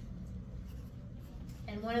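Low, steady room hum, then a lecturer's voice begins speaking near the end.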